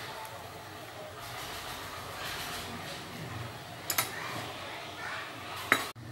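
A metal ladle clinks sharply against an aluminium soup pot twice, about four seconds in and again near the end. Under it runs a steady hiss from the pot of sweet bean soup boiling on the stove.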